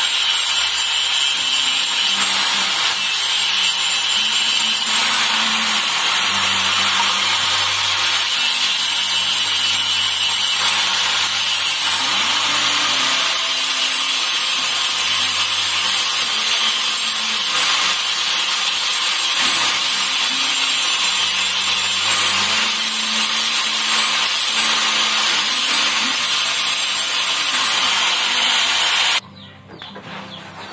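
Handheld electric angle grinder running with its disc against a metal rod, a steady high whine over a harsh grinding hiss. It stops suddenly about a second before the end.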